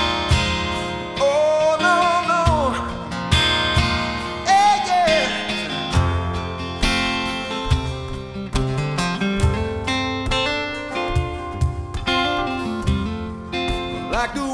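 Solo acoustic guitar strummed and picked through an instrumental break of a country-flavoured song. A high melody line slides up and falls away over it twice, about one and five seconds in.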